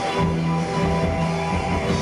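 Live indie rock band playing an instrumental passage: held electric guitar notes over bass and drums.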